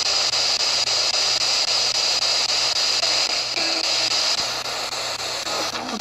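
P-SB11 dual-sweep spirit box scanning through AM/FM radio frequencies, giving a steady hiss of static. Brief snatches of broadcast sound come through about three and a half seconds in.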